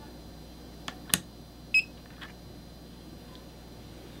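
A sharp click about a second in, then a single short electronic beep from the Mini-Scan biodiesel analyzer as it takes a reading of the test vial.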